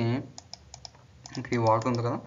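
A quick run of several sharp clicks over about a second, typing on a computer keyboard, between snatches of a man's voice.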